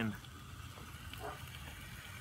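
Faint, steady sizzle of chicken breasts frying in melted butter in a 12-inch cast iron Dutch oven.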